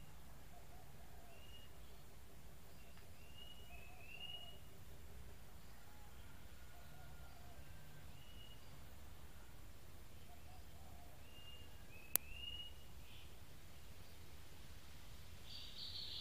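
Faint scattered bird chirps, short rising notes a few seconds apart, over a low steady background rumble, with a single sharp click about twelve seconds in.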